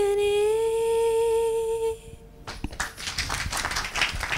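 A woman's voice holds one long sung "ooh" note with a slight waver and stops about two seconds in. A small group then starts clapping, as scattered applause.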